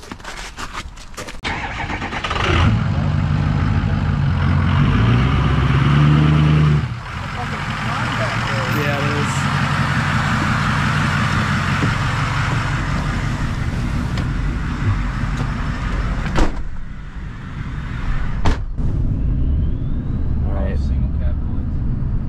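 Ford 6.0 Power Stroke turbo-diesel V8 starting about two and a half seconds in and running steadily, with a drop in level about seven seconds in. Two sharp knocks come late on, like doors shutting.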